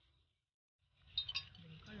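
Wire whisk clinking against a ceramic bowl while whisking batter: after a moment of dead silence, a few quick sharp clinks come a little after a second in.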